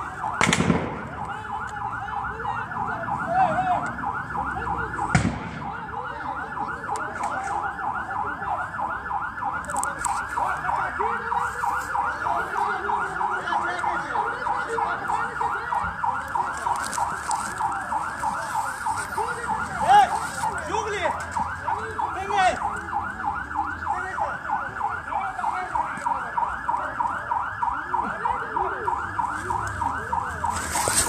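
Electronic vehicle siren sounding in a fast yelp, its pitch rising and falling about four to five times a second, steady throughout, with a few sharp knocks about half a second in, around five seconds and around twenty seconds.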